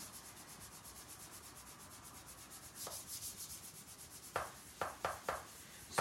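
Handheld plastic cake smoother rubbing over sugarpaste on the side of a cake: a faint, even swishing, with a few light knocks in the second half.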